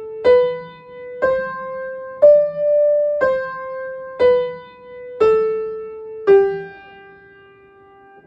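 Upright piano played one note at a time, about one a second: the G major five-finger scale climbing to its top note D and stepping back down through C, B and A to G, which rings on and fades.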